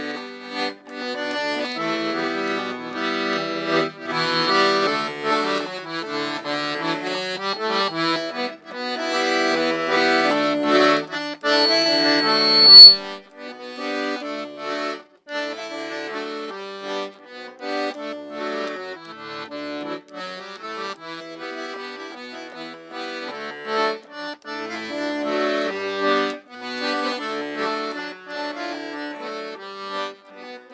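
Piano accordion played solo, an Andean folk tune from Bolivia: a melody over changing chords and bass notes. A brief high-pitched tone about twelve seconds in is the loudest moment.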